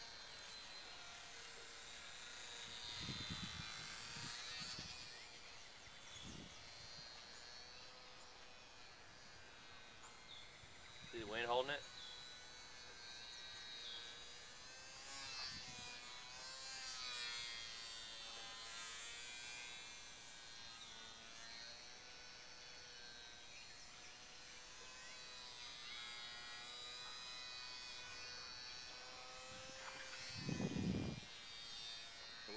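Small electric motor and propeller of a HobbyZone Champ RC plane whining faintly overhead, its pitch drifting up and down. About eleven seconds in, a brief louder sound with a bending pitch rises over it.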